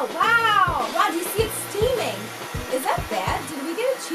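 A woman's high-pitched, wavering squeal in the first second. After it comes the steady hiss of a handheld propane torch heating a knife blade, with background music underneath.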